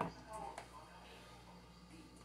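Two short knocks, one right at the start and a smaller one about half a second in, as a plastic ketchup squeeze bottle is handled and put down on a stone countertop. Faint background music and a brief murmur of voice sit underneath.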